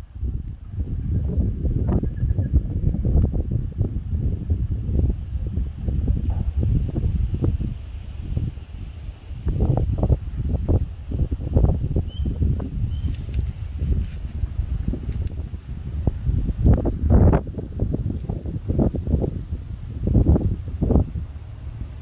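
Wind buffeting the microphone: a loud, low rumble that swells and falls in gusts, strongest about three-quarters of the way through.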